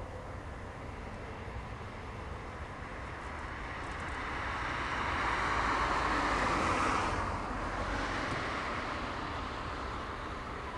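A vehicle passing by: a rushing noise that swells from about three seconds in, is loudest around six to seven seconds, and then fades away.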